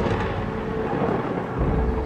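Thunder sound effect rumbling low and dying away, with a smaller swell near the end, over a soft sustained synth pad at the start of the song.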